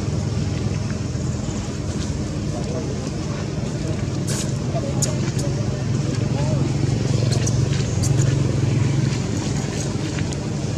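A steady low hum, like a motor running, with indistinct voices in the background and a few sharp clicks about halfway through and again near the end.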